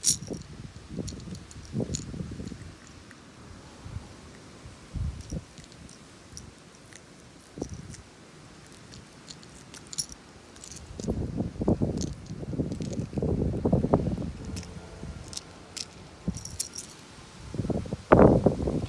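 Small metallic clicks and clinks of a lipless crankbait and its treble hooks as they are worked free of a hooked largemouth bass by hand, with rubbing and rustling from the handling. The rubbing gets louder for a few seconds about two-thirds of the way through.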